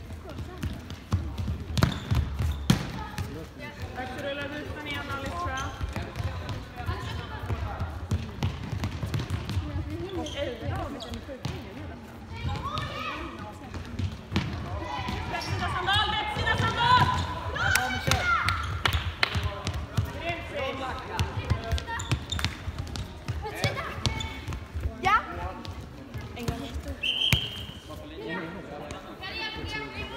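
Futsal ball being kicked and bouncing on a sports-hall floor, sharp thuds echoing in the hall, with players and spectators calling out. A short high tone sounds a few seconds before the end.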